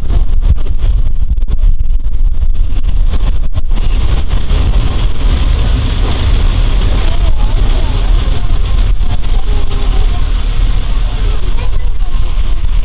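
BMT BU elevated gate car running along elevated track: a loud, steady rumble of wheels and running gear, with a hiss that grows about four seconds in.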